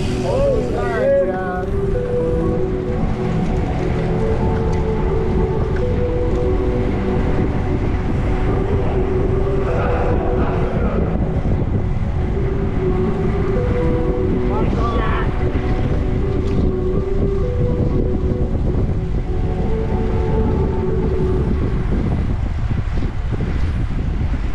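Wind buffeting an action camera's microphone on a moving bicycle, a dense low rumble throughout, with a tune of held notes playing underneath.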